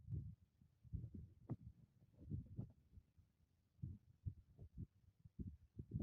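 Faint wind buffeting the microphone in irregular low gusts, with short gaps between them.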